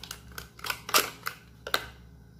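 Lipstick packaging being opened by hand and the tube slid out: a handful of sharp clicks and crinkles, the loudest about a second in.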